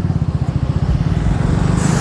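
Engine of a road vehicle running steadily while riding along, a fast, even low pulsing, with a rushing hiss rising near the end.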